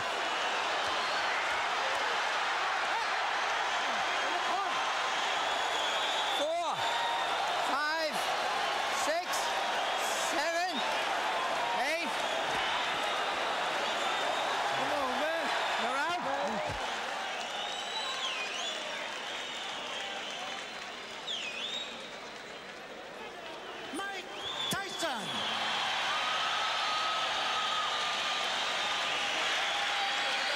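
Arena crowd noise at a boxing match: a steady din of cheering and shouting. A run of sharp cracks comes about a third of the way in, and the crowd dips briefly about two-thirds of the way through.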